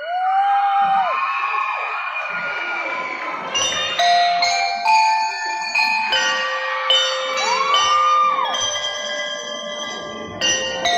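Mallet keyboard percussion of a school drum-and-lyre band playing a melody of struck, ringing held notes, starting about three and a half seconds in, while children in the crowd cheer and shout, with long whoops that rise and fall near the start and again around eight seconds.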